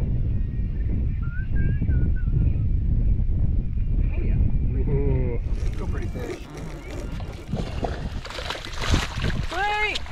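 A hooked red drum thrashing and splashing at the surface beside the boat from about halfway through, over a steady low rumble of wind on the microphone. Brief voices cut in near the middle and again near the end.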